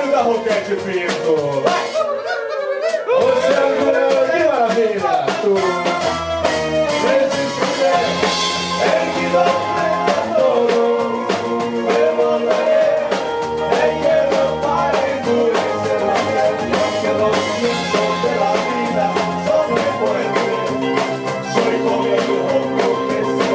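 Live band music: a singing voice over electric guitar and keyboard, with a drum kit keeping a steady beat; the band fills out about three seconds in.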